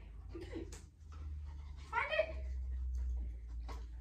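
A young dog gives a short, high-pitched whine about two seconds in, over a steady low hum.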